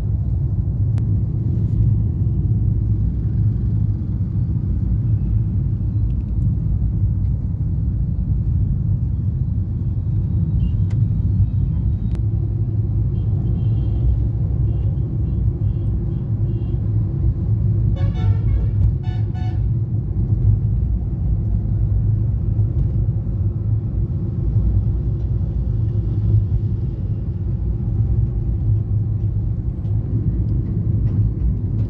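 Steady low engine and road rumble inside a moving car's cabin. A vehicle horn sounds in several short toots about two-thirds of the way through.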